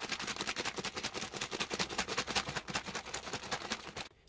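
Laminated MRE beverage pouch holding water and chocolate protein drink powder being shaken hard by hand to mix it: a fast, even rustling rhythm of about ten strokes a second that stops abruptly at the end.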